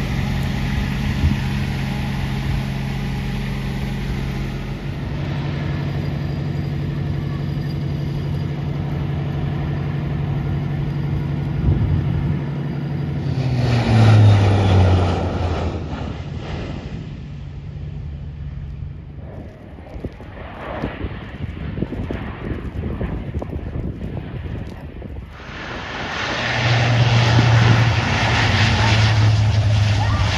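Four-engine turboprop of a Lockheed C-130 Hercules, the Blue Angels' 'Fat Albert': after a steady low engine hum, the aircraft passes loudly about 14 seconds in, its pitch dropping as it goes by. Near the end the turboprops run loud again with a strong low propeller drone as the aircraft is on the runway.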